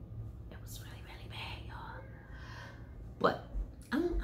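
A pause in talk: a woman breathes softly, then makes a short vocal sound about three seconds in, over a low steady hum.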